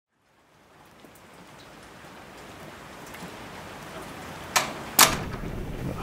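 Rain ambience fades in from silence and grows steadily louder. Near the end come two sharp clacks about half a second apart, the second the louder, and a low rumble sets in after them.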